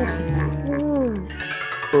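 Cartoon soundtrack music over a held low bass note, with a wordless voice making slow, gliding groans; near the end a quick run of short "oh" exclamations begins.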